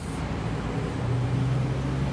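A steady low hum over even background noise.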